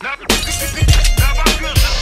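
Turkish underground hip hop track: a beat with heavy kick drums and sharp snare hits, with vocals over it. It drops out briefly at the very start and then comes back in.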